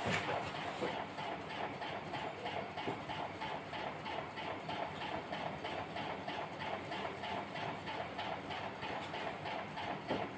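Whiteboard duster rubbing back and forth across the board in quick, even strokes.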